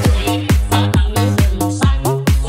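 Vinahouse dance remix: a steady, fast kick drum on every beat, nearly three a second, under bass and synth melody lines.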